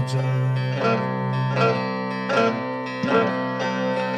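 Bağlama (long-necked Turkish saz) playing an instrumental phrase between sung lines of a folk song. Notes are struck about every three-quarters of a second over strings that keep ringing.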